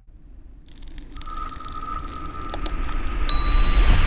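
Subscribe-button animation sound effects: a swelling whoosh with a steady high tone, a couple of sharp mouse-style clicks about two and a half seconds in, then a bright bell-like ding near the end.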